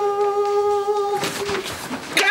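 A woman's voice holding one long, steady hummed or sung note, which breaks off a little over a second in, followed by a shorter, slightly lower note.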